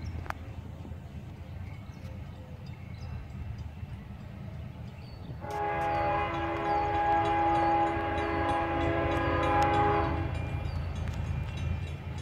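Approaching freight train's diesel locomotive, a low rumble, then its multi-chime air horn sounds one long steady chord of about five seconds, starting about halfway through.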